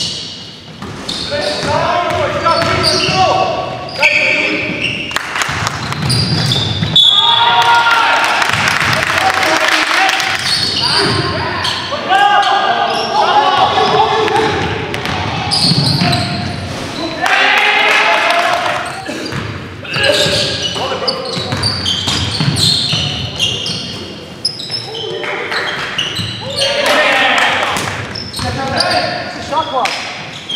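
Basketball game in a gymnasium: the ball bouncing on the hardwood floor and players shouting and calling out, echoing in the large hall.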